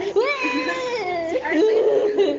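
A high, drawn-out meow-like vocal call that glides up, holds for about a second and then drops, followed by more voice.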